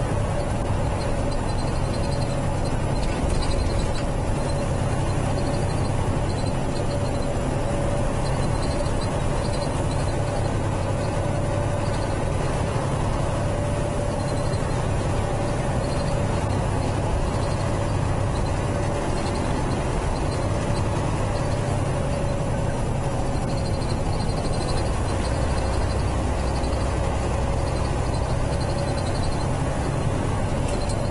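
Steady drone of a semi-truck's diesel engine and road noise heard inside the cab at cruising speed, with a steady mid-pitched hum and faint repeated high chirps over it.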